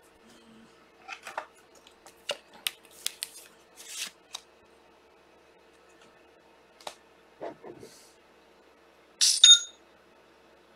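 Trading cards and plastic card holders being handled: soft scrapes and small clicks, a few more a little later, then a louder sharp clack near the end as a card is set down. A faint steady hum runs underneath.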